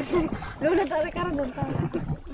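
People's voices, talking and calling out.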